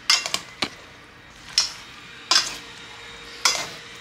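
A green plastic serving spoon stirring pasta salad in a metal bowl, knocking and scraping against the bowl's side: a quick run of knocks at the start, then a single knock every second or so as the salad is turned over.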